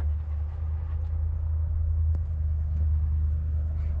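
A steady low rumble, with a faint click about two seconds in.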